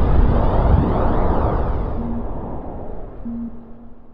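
Logo-intro sound effect: a deep, noisy swell, loudest in the first second and dying away over the next three, with a few short low tone blips.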